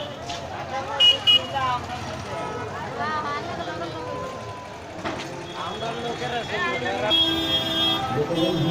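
Busy street crowd with many voices, and vehicle horns sounding: two short toots about a second in and a longer one near the end.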